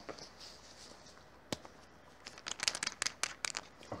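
Small plastic bottles being opened by hand: one sharp click about a second and a half in, then a quick run of clicks and crackles as the caps are twisted and worked loose.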